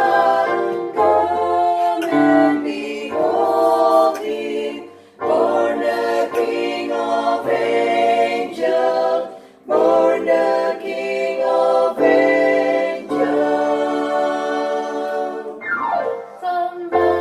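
A small mixed vocal ensemble of women's, a man's and a boy's voices singing a Christmas carol in harmony, with an electronic keyboard holding low bass notes beneath. The singing breaks off briefly twice between phrases, about five and ten seconds in.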